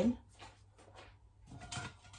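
Faint kitchen handling noises: light ticks and knocks of a plate and utensils being moved, with a slightly louder clatter near the end.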